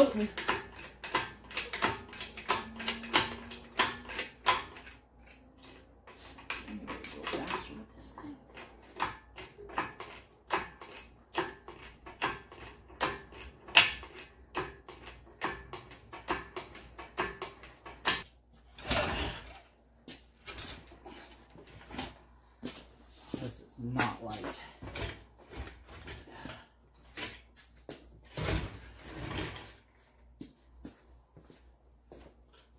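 Repeated metallic clicks and clanks, one or two a second, from a hydraulic engine hoist being worked to lift an engine. There are a few louder knocks in the second half.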